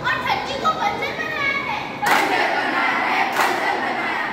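Children's voices in a hall: one young performer declaiming loudly, then about halfway through a group of children shouting out together, with a sudden loud noisy burst at the start of the shout.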